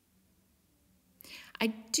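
Near silence for about a second, then a breath in and a woman starting to speak.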